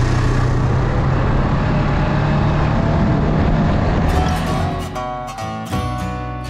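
Ski-Doo Skandic 600 ACE snowmobile's four-stroke engine running at a steady trail cruise. About four seconds in, strummed acoustic guitar music comes in and the engine fades out.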